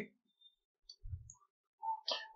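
A few faint, short computer mouse clicks and a soft low thump about a second in, in otherwise near-silent room tone.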